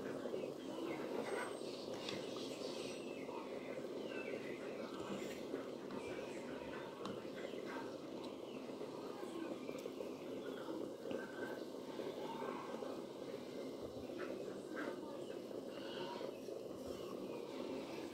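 Cow's-foot (mocotó) broth at a rolling boil in a large aluminium pot, bubbling steadily, with a few light knocks of a metal ladle against the pot as foam is skimmed off.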